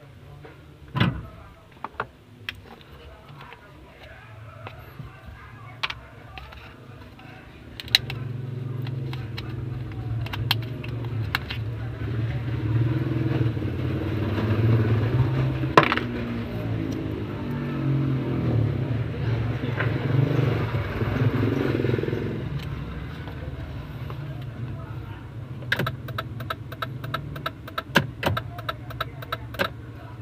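Small clicks and knocks of a blade fuse and plastic fuse-box parts being handled under a car's dashboard, including a quick run of clicks near the end. From about eight seconds in, a steady low rumble, as of a vehicle running, sits under the clicks.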